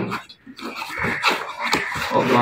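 Cardboard boxes sliding and scraping against each other, with a few light knocks, as a boxed air rifle is pulled up out of its cardboard shipping carton.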